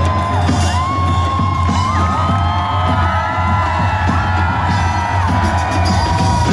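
Loud live pop music from a stadium PA system with a steady heavy bass, heard from inside a large crowd that whoops and cheers over it. Long held voices swoop up into their notes and sustain above the band.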